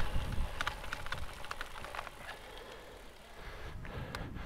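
Wind and rolling noise on the rider's microphone from a bicycle ride, fading steadily as the bike slows to a stop, with a few faint clicks.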